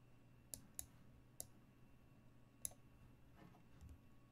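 Four short, sharp computer mouse clicks as chess moves are made on screen, coming irregularly over about two seconds. Under them is a faint, steady room hum.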